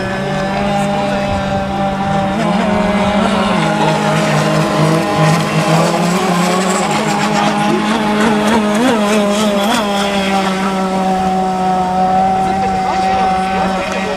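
Radio-controlled speedboat running at speed on open water, its motor giving a steady drone with small shifts in pitch.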